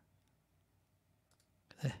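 Quiet room tone with a few faint clicks a little past halfway, then one short spoken syllable near the end.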